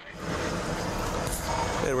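Steady vehicle noise heard from inside a moving car's cabin in slow freeway traffic: road and engine noise that starts abruptly and holds level. A radio voice comes in at the very end.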